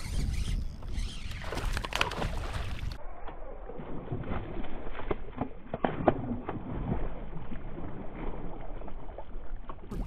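Wind buffeting the microphone and water lapping around a kayak, with sharp splashes near the middle, loudest about six seconds in, from a hooked largemouth bass thrashing at the surface beside the boat. The sound turns duller about three seconds in.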